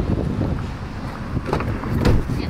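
Wind rumbling on the microphone outdoors, then a couple of short clunks near the end as a car's rear door is opened.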